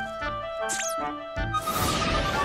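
Cartoon background music with a short high squeak about three-quarters of a second in. Near the end a whoosh starts, followed by a long falling whistle: a leap sound effect.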